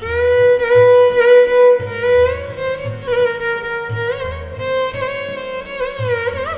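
Violin playing a slow devotional melody, holding long bowed notes with sliding ornaments between pitches about two seconds in and near the end, over low accompaniment notes recurring about once a second.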